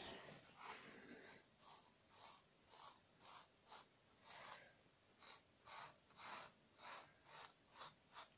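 Soft brush sweeping over freshly laid gold metal leaf, brushing off the loose excess: a run of faint, quick swishes, about two a second, after a short stretch of steadier rubbing at the start.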